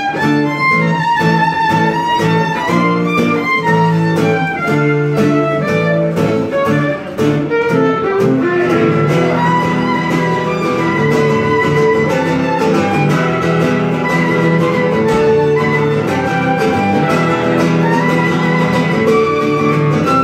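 Fiddle playing a melody over a steadily strummed acoustic guitar in an instrumental stretch of a blues number, with no singing.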